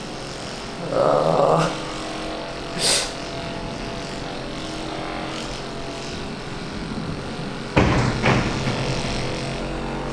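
Handheld percussive deep-tissue massage gun running against chest muscle with a steady motor hum. It turns suddenly louder and rougher about three-quarters of the way through.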